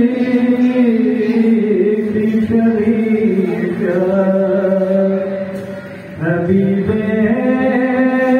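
Balti qasida chanted in long, held sung notes. One phrase tails off about six seconds in, and the next begins.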